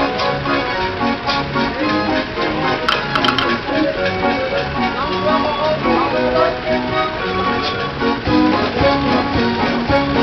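Dutch street organ (draaiorgel) playing a Sinterklaas song: a lively organ melody with a steady beat.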